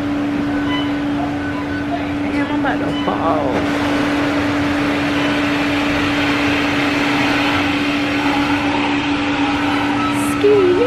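Restaurant interior din: a steady machine hum under an even wash of background noise, with faint voices of people nearby.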